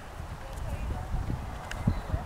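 A horse's hooves thudding irregularly on grass turf as it moves under saddle at a trot or canter.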